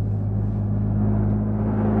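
Cartoon sound effect of a small car's engine running, a steady low hum as the car drives along.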